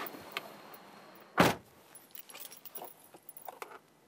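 A car door, the front door of a Honda CR-V SUV, slammed shut about a second and a half in, the loudest sound. Light clicks and jingling, like keys being handled, follow inside the car.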